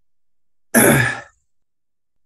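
A man's short, breathy sigh a little before the middle, with silence on either side.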